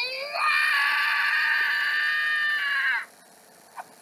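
A child's high-pitched scream, rising at its start, held for about two and a half seconds and cut off sharply, heard through a laptop speaker.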